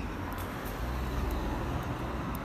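Outdoor urban background noise: a steady low rumble of road traffic.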